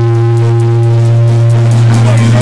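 Live electronica-leaning jam band music: a steady deep bass note under a held chord, with the drums almost silent.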